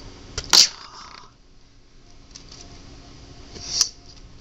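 Two sharp plastic snaps a few seconds apart, one about half a second in and one near the end: Bakugan Coredem balls springing open into their figures on the gate cards. A brief rising swish comes just before the second snap.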